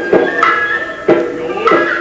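Traditional Japanese-style instrumental music: a string of plucked or struck notes, with a held high tone joining about half a second in.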